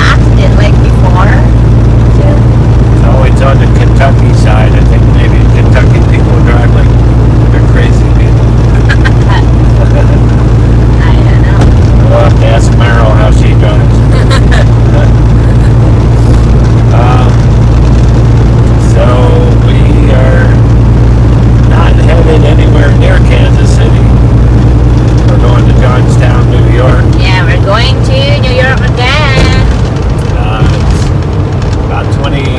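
Steady, loud drone of a semi-truck's diesel engine and tyres heard from inside the cab at highway speed, with intermittent indistinct voices over it.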